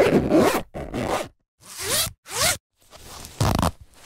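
Zippers being zipped in a series of about five quick separate strokes. The first stroke is the longest and loudest, and two short strokes near the middle rise in pitch as they run.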